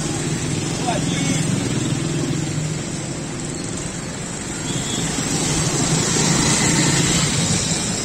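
Steady road-traffic noise as cars, motorcycles and an auto-rickshaw pass, mixed with people's voices.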